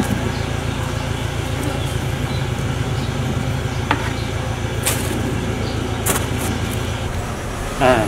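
Steady low background rumble with a few faint clicks partway through.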